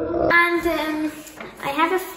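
A girl's voice singing in a drawn-out tone, holding one note for about a second, then a shorter rising-and-falling vocal phrase near the end.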